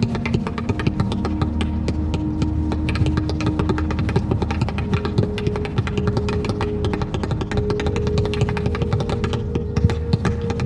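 Rapid tap-shoe taps, many clicks a second, over music with a low bass and long held notes that step up in pitch around halfway.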